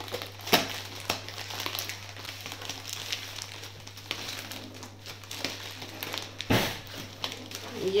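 Packaging being torn and crinkled open by hand: a continuous crackle and rustle, with a sharp snap about half a second in and a louder rip about six and a half seconds in.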